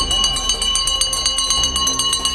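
Brass puja hand bell rung rapidly and continuously, its high metallic ringing steady under quick repeated strikes, as part of a Hindu puja ritual.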